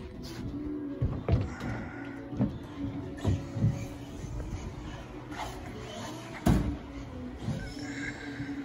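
A Team Associated B74.1 4WD electric off-road buggy running laps on a carpet track, with a thin motor whine and a handful of sharp knocks, the loudest about six and a half seconds in. Steady background music plays under it.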